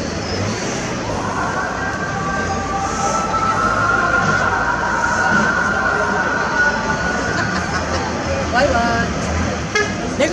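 Town-street ambience: steady traffic noise with people talking, and a steady, slightly wavering tone held for about seven seconds from about a second in.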